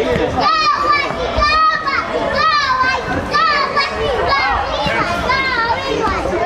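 Children's voices shouting and calling out over and over during an indoor youth soccer game, high-pitched rising-and-falling calls overlapping through the hall.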